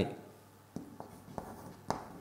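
Chalk writing on a chalkboard: four short, sharp taps and strokes as letters are formed, the loudest near the end.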